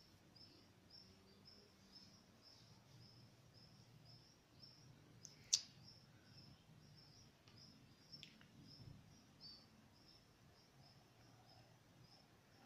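Near silence: quiet room tone with a faint high chirp repeating about twice a second, like a small bird, and a single sharp click about halfway through.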